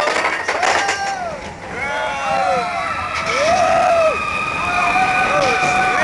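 Roller coaster riders screaming and yelling on a drop, several voices at once, with long held screams from about halfway through, over the rush of wind and ride noise.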